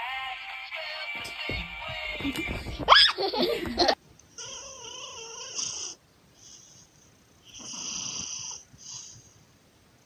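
For the first four seconds a tinny electronic tune plays from a child's light-up musical toy book as a kitten paws at it, with a loud rising squeal about three seconds in. Then a sleeping cat snores, with wheezy breaths at uneven gaps.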